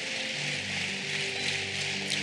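Audience applauding steadily, with sustained musical chords coming in about half a second in.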